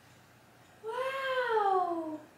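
A six-month-old baby's single long coo, starting about a second in, rising slightly and then sliding down in pitch over about a second and a half.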